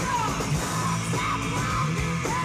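Punk rock band playing live: electric guitars, bass and drums with a yelled vocal line over them, heard from the crowd.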